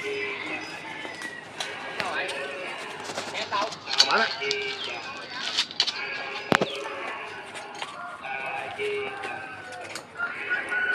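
Chickens clucking and calling in short scattered bursts, mixed with small bird calls, with a few sharp knocks; the loudest knock comes about six and a half seconds in.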